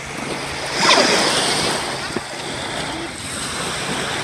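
Small lake waves washing in over a sandy, pebbly shoreline, with a louder surge of water about a second in that then eases off.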